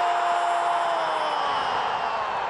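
A football commentator's single long held shout as a goal is scored, its pitch sagging slightly toward the end, over steady stadium crowd noise.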